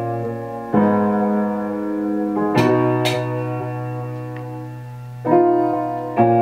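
Piano playing slow, held chords in a beat's chord progression, a new chord struck about every two seconds.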